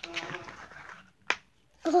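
Hands pulling and prying at a stiff plastic-and-cardboard toy package, rustling, with one sharp snap just over a second in as it gives a little. A strained 'ugh' comes at the very end.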